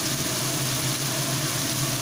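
Ground spices frying in bubbling hot oil in a wok, a steady sizzle, over a steady low hum.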